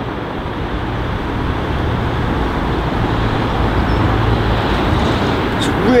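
Road traffic noise: a low hum and hiss of vehicles that slowly grows louder over the first few seconds, then holds steady.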